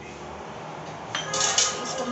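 Stainless steel spoon clinking against steel kitchenware, starting about a second in with a sharp knock and a few ringing clinks.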